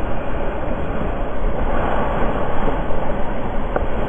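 Steady, loud rushing roar of a breaking ocean wave, heard from a camera inside the hollow barrel as the lip pours over.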